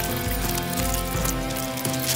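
Background music with held tones over a low beat.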